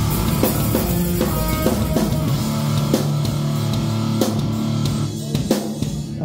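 A rock band playing loud and heavy: a drum kit and distorted electric guitar through a Mesa/Boogie Rectifier Solo Head amp, with held chords over steady drum hits. The playing thins out near the end and stops on a last hit that rings briefly.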